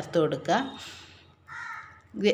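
A voice speaking briefly, then a short raspy sound about a second and a half in.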